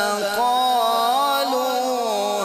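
A male qari reciting the Quran in the melodic tajweed style, drawing out a long vowel with a wavering, ornamented pitch, through a microphone and sound system.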